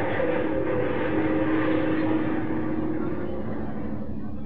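Synthesizer keyboard solo holding a dense, noisy whooshing sound over a sustained low note. Its brightness slowly falls, and it thins out near the end.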